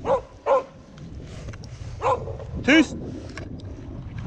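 Smålandsstövare hound barking four times, in two quick pairs about two seconds apart, over low wind noise on the microphone.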